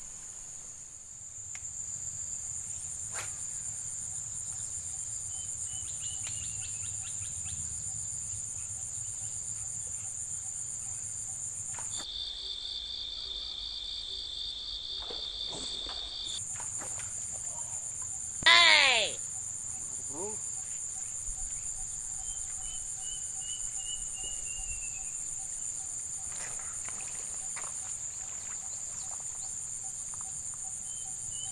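Steady, high-pitched, pulsing insect chorus. For about four seconds in the middle it gives way to a lower pulsing insect tone. About eighteen and a half seconds in, a brief loud sound falls steeply in pitch.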